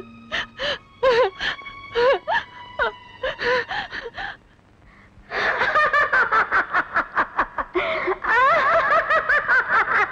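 A woman giggling in short, high-pitched bursts for about the first four seconds. After a brief pause, a Bollywood film song starts with a fast, even beat and a wavering melody line.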